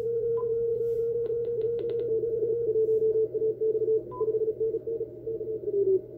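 A Morse code (CW) signal heard through an Icom IC-705 transceiver's speaker: a single tone around 500 Hz, almost unbroken for the first three seconds and then keyed into dits and dahs, while the receiver's narrow filter is widened from 50 Hz to 350 Hz and the surrounding band noise grows near the end. Two short higher beeps, one near the start and one about four seconds in, and a quick run of clicks in the second second.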